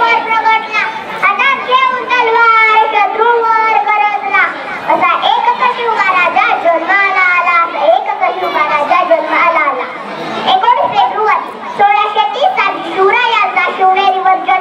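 A young girl's speech into a handheld microphone: loud, high-pitched and declaimed with sweeping rises and falls in pitch, with one brief dip in the flow about ten seconds in.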